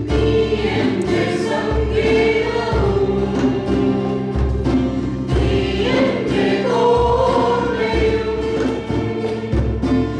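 A church choir singing a praise-and-worship song, led by women's voices at a microphone, with low bass notes recurring beneath the singing.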